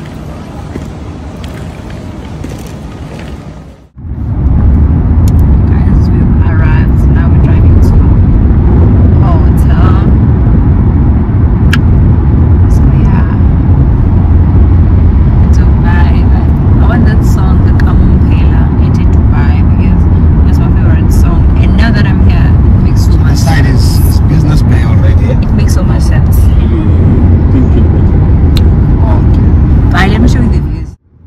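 Loud, steady low rumble inside a moving car's cabin, starting suddenly about four seconds in, after a few seconds of quieter airport-hall background noise.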